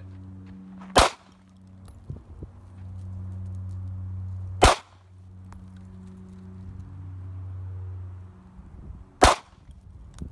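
Three single shots from a semi-automatic handgun: one about a second in, one near the middle and one near the end. A steady low hum runs between the shots.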